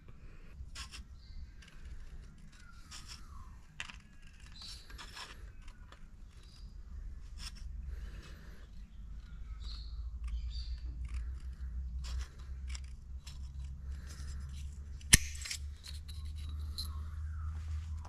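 Hand tin snips cutting thin steel shim foil (10 thou) into strips: a run of uneven snips and scrapes of the thin sheet, with one sharp click about fifteen seconds in, over a low steady rumble.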